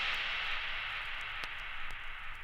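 Vinyl record surface noise as the track runs out: a fading hiss with a low hum and a couple of faint crackle clicks.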